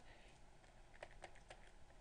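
Near silence with a few faint ticks and taps of a stylus writing on a pen tablet, clustered around the middle.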